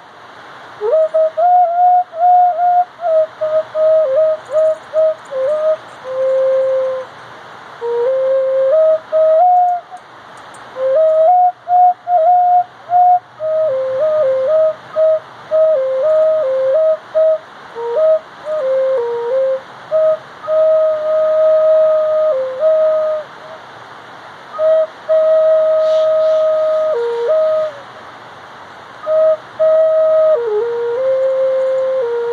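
A flute playing a slow melody of held notes and small stepwise runs, in phrases broken by brief pauses.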